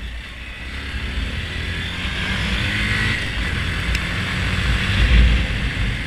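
Honda Grom's 125 cc single-cylinder four-stroke engine running under way, getting louder as the bike picks up to a peak about five seconds in, then easing off. Wind rushes over the microphone.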